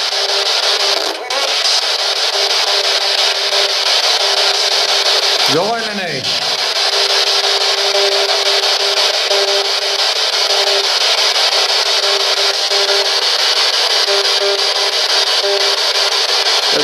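P-SB11 spirit box sweeping the radio band: loud, steady static hiss with a faint steady hum. A brief voice stands out about six seconds in.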